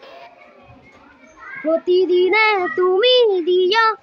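A young boy singing unaccompanied; after a pause of about a second and a half, he resumes with a run of short held notes that bend up and down.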